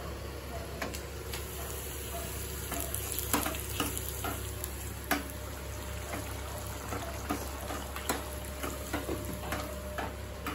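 Potato curry sizzling and bubbling in a kadai: a steady frying hiss with scattered clicks of stirring against the pan.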